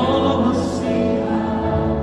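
Christian praise-and-worship music: a choir singing held chords over accompaniment, a new phrase entering at the start.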